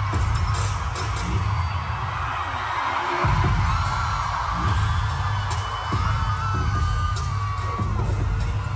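Live K-pop dance track played loud through an arena sound system and recorded from the stands, with a heavy bass beat that drops out briefly about three seconds in and then comes back, and a melody over it.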